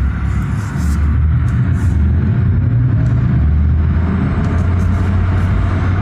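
Steady low rumble inside the cabin of a moving Audi RS e-tron GT: the electric car's road and drive noise at an even pace.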